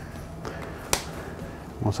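A cap snapped onto a water-sample test tube: one sharp, short click about a second in, over quiet room noise.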